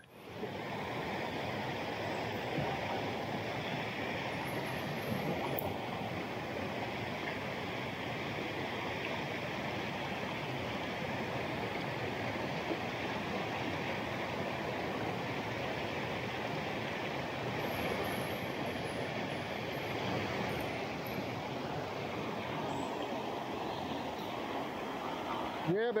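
Fast creek water rushing over rocks in a steady, even rush.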